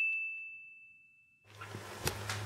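A single bright, bell-like ding, an added chime sound effect, rings out and fades away over about the first second. After a short silence, a low room hum comes in about one and a half seconds in.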